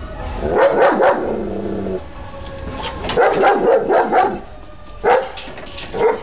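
Large guard dogs barking at the gate in bursts: a quick run of barks about half a second in, a longer run from about three to four seconds in, then single barks near the end.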